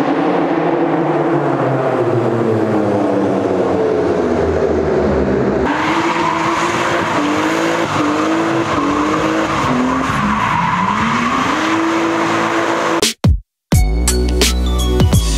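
A car engine revving up and down hard while the tyres squeal as the car drifts and spins in a burnout. There is a sudden change of scene partway through, and the sound briefly drops out near the end.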